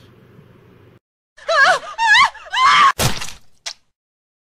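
Outro sound clip: three high, wavering, voice-like cries in quick succession, then a single loud crash like something smashing, and a short blip after it.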